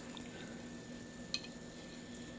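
A single faint click of a metal utensil against a ceramic plate about a second and a half in, over a low steady hum.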